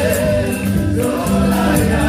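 Live gospel worship music: a choir of singers sings together over a band with a steady beat and crisp high percussion.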